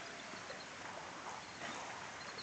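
Faint, steady outdoor background hiss with no distinct events.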